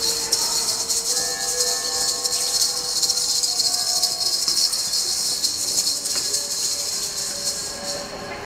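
Music carried by a steady, dense shaker rattle, with faint held tones underneath.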